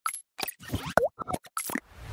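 Animated logo intro sound effects: about eight short cartoon-like pops and blips in quick succession. The loudest, about a second in, has a quick swooping pitch glide.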